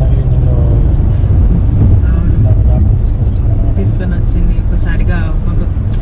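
Steady low rumble of a car's engine and tyres heard inside the cabin while driving, with brief snatches of quiet talk.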